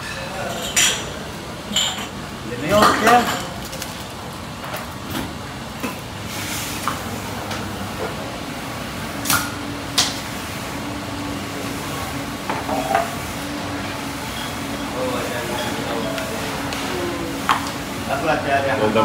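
Scattered clinks and taps of glass bottles and a shot glass being handled and set down on a stone bar counter while a shot cocktail is mixed, with a low steady hum through the middle.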